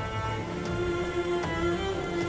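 Background music of bowed strings, violin and cello, holding long sustained notes.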